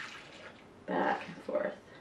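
Soapy water poured from a plastic measuring cup into a small stainless-steel measuring cup and splashing back into a metal bowl, with a brief splash at the start and short bursts of pouring about a second in.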